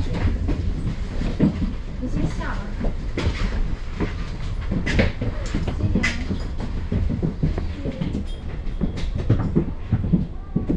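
Double-decker bus's diesel engine idling while the bus stands still, a steady low rumble heard inside the bus, with frequent short rattles and knocks from the bodywork and fittings.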